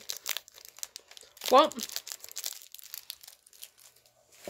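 A plastic candy wrapper crinkling as it is handled, in quick irregular crackles.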